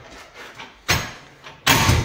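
Heavy electrical cable being handled: a sudden knock about a second in, then a louder, harsher burst of noise near the end.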